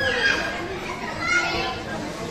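Young children playing, with two short high-pitched cries, one at the start and one about halfway through, over background chatter.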